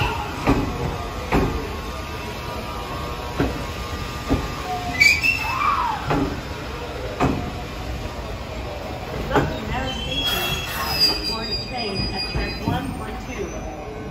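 A Hanshin electric train pulls out past a platform. Its wheels clack over rail joints, knocking roughly once a second, and a rising-then-falling motor tone is heard about five seconds in. High, thin wheel squeal sets in over the later seconds as the last cars pass.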